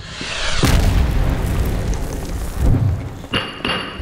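Segment-intro sting: a building swell breaks into a deep, loud boom with a music hit about half a second in. A second low swell follows, and a high ringing tone comes in near the end.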